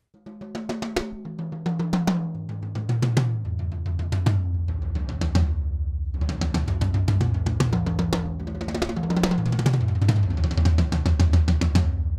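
All-Purpleheart DW Collector's Series toms with clear Emperor heads, struck with sticks in rapid fills that step down from the small rack toms to the floor toms. The run from high to low is repeated several times. Snare wires are off, so there is no snare buzz.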